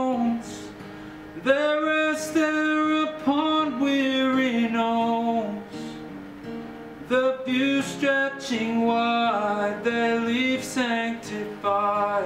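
Slow folk song: a fingerpicked acoustic guitar with a man's voice carrying a drawn-out melody over it, the notes gliding between pitches.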